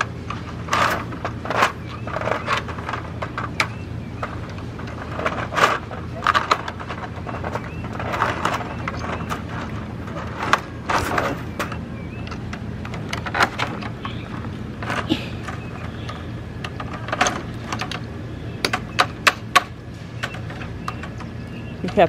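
Irregular knocks, clinks and scrapes of metal tools and chain-link wire as an old fence post cemented into brick is worked loose.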